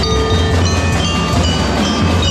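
A drum and lyre band playing: bell lyres and a mallet instrument carry a ringing melody over snare, tenor and bass drums, loud and steady.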